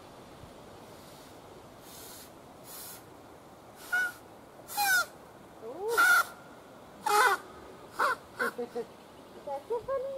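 A series of harsh bird calls starting about four seconds in: several single calls, then three quick ones close together, and a longer, steadier call near the end.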